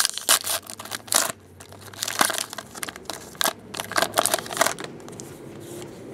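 Foil wrapper of a 2014 Valor football card pack being torn open and crinkled by hand: a quick run of sharp crinkles that thins out after about five seconds.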